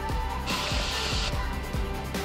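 Background music with a steady beat and bass line, with a short burst of hiss about half a second in.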